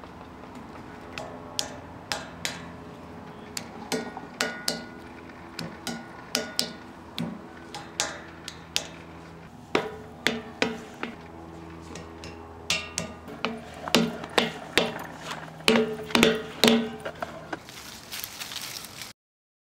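Repeated knocks on a hollow metal statue, each strike leaving a ringing tone that hangs on after it. The knocks come at an uneven pace of one or two a second and grow louder and closer together in the last few seconds.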